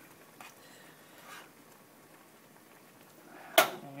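Faint steady hiss from a pot of soup on a lit gas stove burner, then a single sharp click near the end as the burner is turned off.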